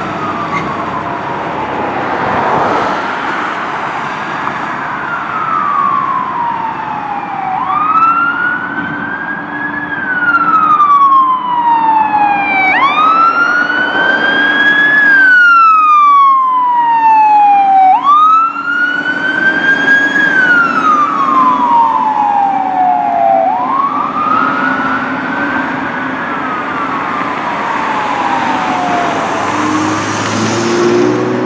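Fire truck siren on a slow wail, rising quickly in pitch and then falling more slowly, about every five seconds, loudest around the middle. Road traffic noise runs underneath.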